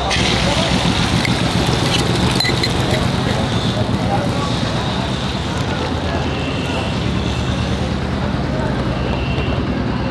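Beaten egg sizzling as it is poured into a hot pan on a gas burner, over a steady hum of street traffic with voices in the background.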